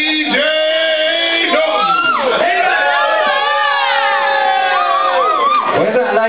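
Voices whooping and shouting, with long sliding and wavering pitches.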